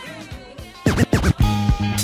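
A vinyl record scratched back and forth on a DJ turntable: about four quick sweeping scratches a little under a second in, cutting between the quieter tail of one funk record and the next track, which comes in loud with bass and drums.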